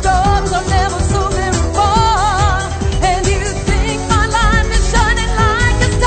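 Pop song with a sung melody over a beat.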